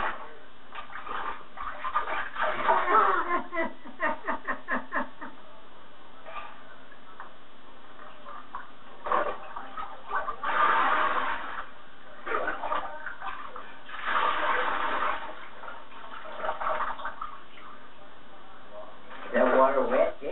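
Bath water splashing and being poured from a cup, in noisy bursts about ten and fourteen seconds in, with short bursts of voices between. The sound is dull and thin, played back from videotape through a TV speaker.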